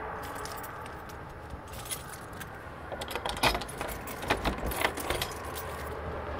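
Steady low road rumble inside a moving car, with a burst of light metallic clicking and jingling about three to five seconds in.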